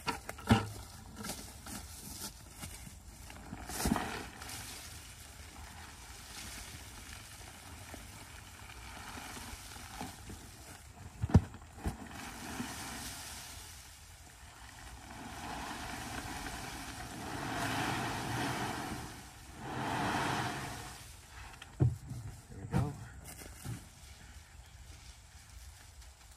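Wood chips pouring out of a tipped plastic trash can onto a pile, in two long pours past the middle, with a few sharp knocks from the can being handled, the loudest a little before the middle.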